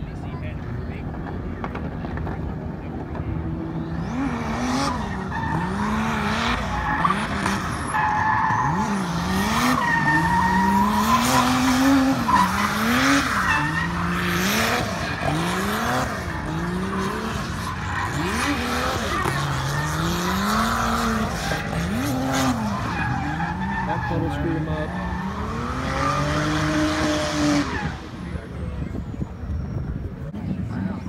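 A drift car's engine revving up and dropping back over and over as it slides around the course, with tyre squeal over it. The engine comes in a few seconds in and fades out near the end.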